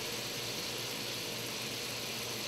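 Steady, even sizzle of a halibut fillet frying in butter in a skillet over a gas burner.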